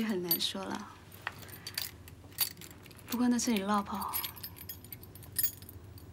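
Light metallic jingling and clinking, in scattered small clicks, between two brief lines of spoken film dialogue.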